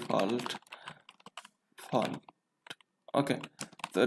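Typing on a computer keyboard: keystrokes in short runs with pauses, the busiest run near the end.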